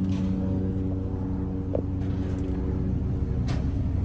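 The diesel engine of a car-carrier truck idling steadily: a constant low hum with a rumble underneath.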